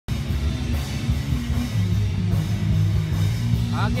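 Amplified rock band sound check, mostly deep bass notes stepping through a riff with drums underneath, the higher sounds muffled.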